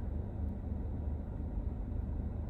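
Steady low rumble of a car heard from inside the cabin: engine and road noise, with no other events standing out.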